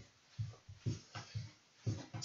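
Soft, quick thumps of feet landing on a floor mat as a person does mountain climbers, roughly three a second.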